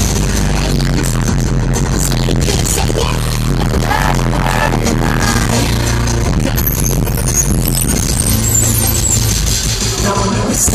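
Loud live concert music over a stadium PA, recorded from the crowd: a sustained low bass line under the song, with a faint sung melody in the middle.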